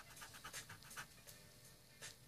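Paper blending stump rubbed quickly back and forth over coloured-pencil shading on drawing paper: a faint run of short, scratchy strokes in the first second, then softer rubbing.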